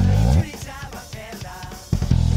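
Electric bass, a Ken Smith Brooklyn BR695 recorded direct, holds a loud low note that slides up in pitch and stops about half a second in. A quieter stretch of rock drum kit hits follows from the song's backing track, and the bass comes back in at the very end.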